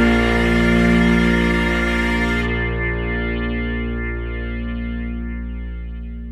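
The band's final chord is held and slowly fades out, with guitar run through effects. The bright top of the sound drops away about two and a half seconds in, leaving a softer ringing chord that dies down.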